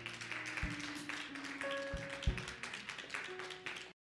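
Church congregation clapping in praise over music with a few held notes; the sound cuts off abruptly just before the end.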